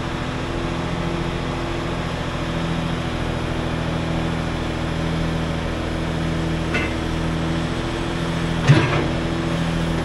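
A 6x6 wrecker's engine running steadily to work the hydraulic rotator boom as it lifts and swings a rock, with a faint pulse in its note. A small click comes about seven seconds in, and a sharper knock, the loudest sound, just before nine seconds.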